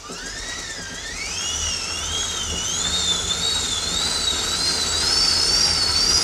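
A fixed-gear track bike spinning up on indoor bike rollers as the rider starts pedalling: a whine that rises in pitch over the first second or so, then holds, wavering up and down about once a second. Under it is a low rumble, and the whole sound grows steadily louder as the speed builds.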